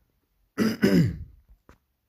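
A man clearing his throat, a short two-part sound about half a second in.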